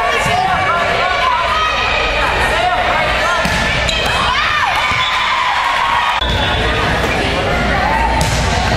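Indoor volleyball rally: the ball struck by players' hands and arms, with sneakers squeaking on the hardwood gym floor. Players and spectators shout and talk over it.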